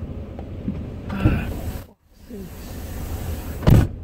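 Car cabin noise with short hisses of escaping air, the loudest a sharp burst near the end. The driver takes it for air leaking out of a flat tyre, but it comes from the car alongside, not his own tyre. The sound drops out briefly at about the halfway point.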